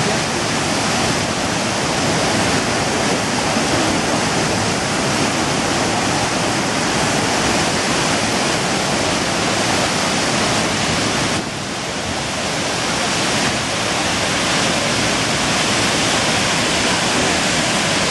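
Waterfall: a steady, dense rush of falling water that dips a little in level a little past halfway, then builds back up.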